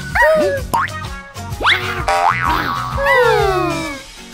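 Cartoon background music with springy, sliding sound effects over it: pitched glides that fall near the start and again about three seconds in, and one sharp rising glide in between.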